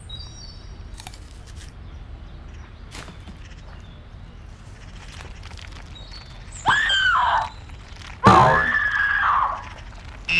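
Two screams: a short one falling in pitch about seven seconds in, then a longer, louder one about a second later, over a faint steady background.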